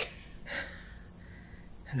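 A frail man's breathy intake of air about half a second in, between slow, halting words, over faint low room hum.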